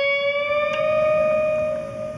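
A single guitar note bent upward, rising slightly in pitch and then held, ringing and slowly fading.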